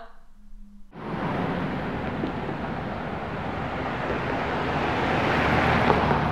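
Steady rush of city street traffic noise. It starts suddenly about a second in and swells slowly.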